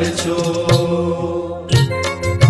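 Gujarati devotional bhajan (kirtan) music: a sung syllable held and trailing off over steady sustained accompaniment, with a percussion stroke about a third of the way in and another near the end.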